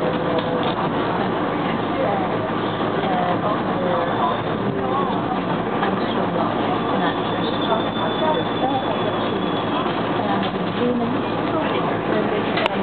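Steady running noise of a SEPTA electric commuter train heard from inside the passenger car, wheels rolling on the rails at speed. A faint high tone comes in for a couple of seconds in the middle.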